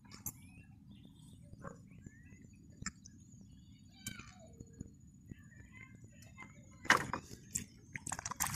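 Quiet open-air river ambience with a few faint bird chirps and small clicks of fishing tackle being handled, then a short, louder burst of noise about seven seconds in.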